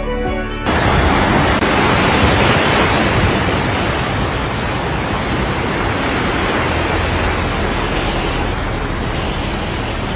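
Background music cuts off under a second in and gives way to a steady, even rushing noise of heavy rain.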